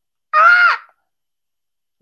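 A man's short, loud, high-pitched vocal cry, a single drawn-out 'eeh'-like exclamation that rises a little and falls away, lasting about half a second.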